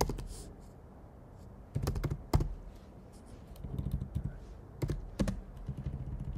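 Typing on a computer keyboard: a few short runs of keystrokes separated by pauses.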